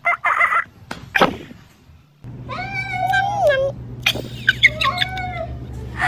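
Cats: two short cries during a play-fight in the first second or so, then a cat meowing in drawn-out, bending calls, twice, over a steady low hum.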